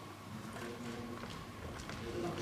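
Reverberant sports-hall ambience: faint distant voices and a few light clicks or steps on the wooden floor.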